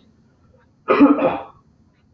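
A man coughs once, a short throaty burst about a second in.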